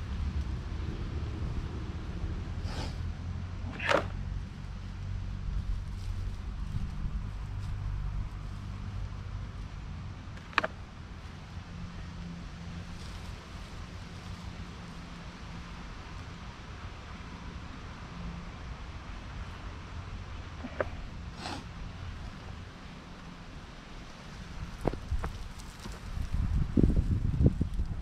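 Distant lawnmower engine running steadily as a low hum, with a few isolated sharp clicks. Near the end a louder rumbling noise comes in.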